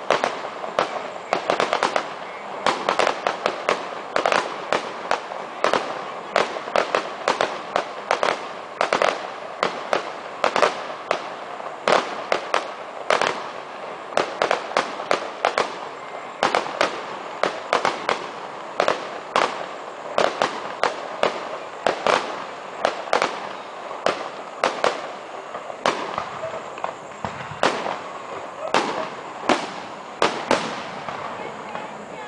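Aerial fireworks shells bursting in a rapid, unbroken barrage of sharp bangs, several a second.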